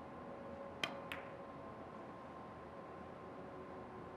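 A cue tip strikes an ivory-white carom cue ball with a sharp click about a second in, followed a quarter second later by a second, softer click of ball meeting ball. Steady hall hum underneath.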